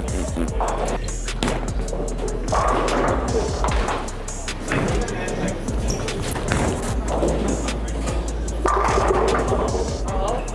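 Music and voices over bowling-centre noise, with a bowling ball thrown and rolling down the lane.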